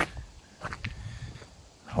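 Faint footsteps of someone walking on a gravel track.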